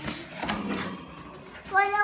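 Cardboard box flaps being handled and pulled open, a light rustling with a couple of sharp clicks, one right at the start and one about half a second in. A child's voice says "What" near the end.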